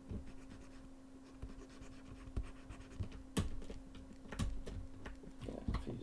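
Desk-work noises from a digital sculptor: light scattered clicks and scratches of a pen on a drawing tablet and of computer keys, the sharpest about three and a half and four and a half seconds in. Breathing close to the microphone, over a steady low hum.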